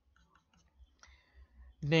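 A few faint, short clicks in a near-quiet pause, before a man's voice starts again near the end.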